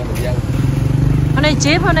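Motorbike engine running close by in street traffic, a steady low drone that swells and fades over the couple of seconds.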